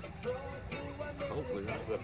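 Music with sustained, steadily held notes.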